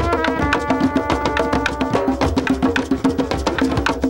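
Music of fast hand drumming, dense quick strokes, with a steady low note and quick stepping runs of pitched, struck notes over it.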